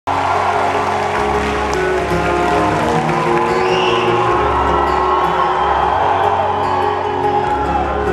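Acoustic guitar playing chords through a concert PA in a large hall, low notes changing every couple of seconds, with the crowd cheering and whooping over it.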